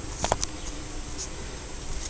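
A couple of short faint clicks just after the start, from the Schwinn Safari TT stroller's linked rear parking brake bar being lifted to release both rear wheels, over a steady low background rumble.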